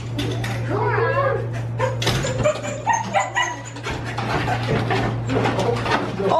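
Husky whining and yowling excitedly in greeting, a run of rising-and-falling howl-like calls. A steady low hum runs underneath.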